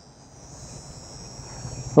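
Insects outdoors keeping up a steady, high-pitched trilling drone. A faint low rumble grows underneath toward the end.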